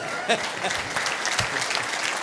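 Audience applauding: many hands clapping together in a dense, even patter.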